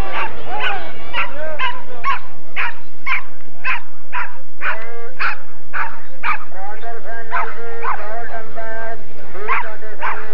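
Excited dogs yelping over and over, about two yelps a second, with longer drawn-out whines in the second half.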